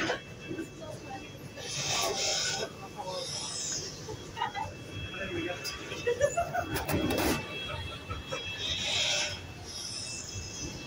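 Background chatter of passengers filing off a catamaran ferry, with a brief cluster of clatters about seven seconds in and two short bursts of hiss, one about two seconds in and one near the end, over a faint steady high whine.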